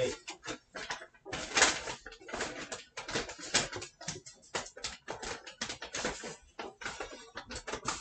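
Tissue paper and a shopping bag crinkling and rustling as items are rummaged out: a dense, irregular run of sharp crackles.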